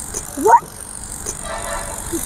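A single quick whistle-like swoop rising sharply in pitch about half a second in, the kind of comic sound effect edited into prank videos to mark a shocked reaction. It plays over steady background noise.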